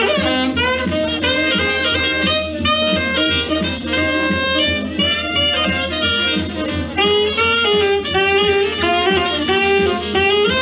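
Alto saxophone playing a jump-blues swing solo over a steady drum beat, a run of short notes that settles into longer, lower notes in the last few seconds.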